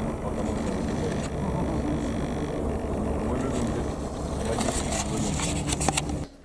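Distant helicopter drone, a steady low rumble as it flies away. Handling clicks and rustle come near the end.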